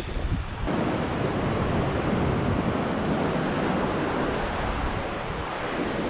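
Lake Huron waves breaking and washing up a sandy beach, a steady surf, with wind rumbling on the microphone.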